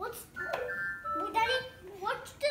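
Mini electronic keyboard playing a few short, steady electronic notes that step between pitches, with a young child's voice over it.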